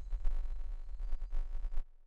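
A steady low electrical hum with a buzzy edge in the recording that cuts off suddenly near the end.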